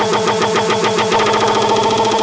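Uptempo hardcore electronic music in a breakdown without the kick drum: a rapid stuttering synth pattern over steady high synth tones.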